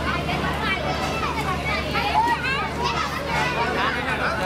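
Overlapping voices of children and bystanders, a lively babble with high children's voices calling and chattering.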